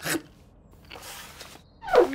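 Napkins rustling as they are picked up to wipe mouths: a short, sharp rustle at the start and a fainter, longer rustle about a second in.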